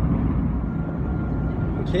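Steady low road and engine rumble inside a moving vehicle's cabin.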